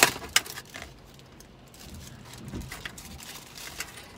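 Cake container and eating utensil being handled: a few sharp clicks and taps in the first second, then faint handling sounds.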